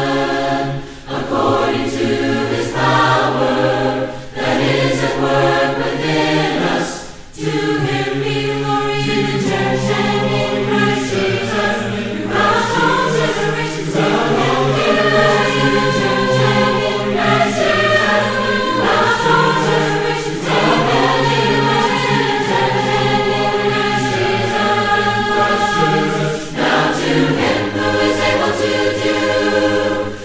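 Mixed choir singing a cappella in four-part harmony, with no instruments. There are three short breaks between phrases in the first eight seconds, then the parts overlap in continuous counterpoint.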